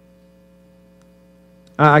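A steady, low electrical hum made of a few fixed tones. A man's voice starts in just before the end.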